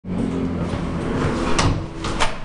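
An interior door being handled, with a sharp click about one and a half seconds in, over a steady low hum.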